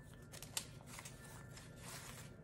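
Faint rustling of paper receipts being handled, with a few light clicks.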